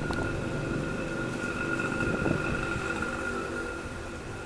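Low, steady rumble of a motor vehicle, with a thin steady high whine over it and a couple of faint knocks.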